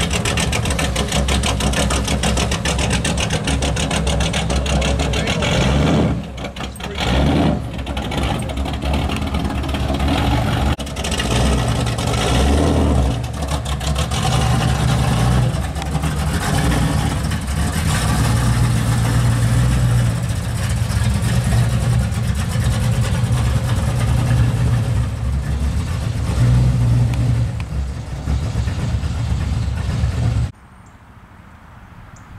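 Plymouth Duster muscle car's engine running loudly at idle through a deep exhaust, with a few blips of the throttle that rise and fall.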